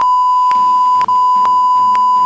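A loud, steady censor bleep: one unwavering high tone with a brief break about a second in. It covers offensive words in a recorded phone call.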